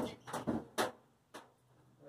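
A few short clicks and knocks of objects being handled at a workbench in the first second, then one faint tap.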